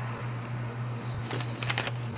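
Quiet room tone with a steady low hum, and a few faint clicks about a second and a half in.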